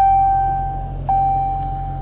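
Dodge Challenger's dashboard warning chime: a single clear tone struck twice about a second apart, each strike ringing on and slowly fading, over a low steady hum in the cabin.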